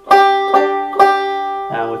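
Five-string banjo: three single G notes plucked about half a second apart, the last on the open fifth string, each left ringing. A man's voice comes in near the end.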